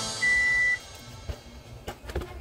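Background music ending, followed by a single short, high beep held steady for about half a second, then quiet with a couple of faint clicks.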